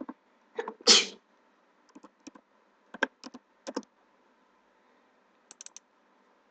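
Computer keyboard and mouse clicks come in small groups while dimension values are entered. About a second in there is a short, loud breath noise from the person at the computer, louder than the clicks.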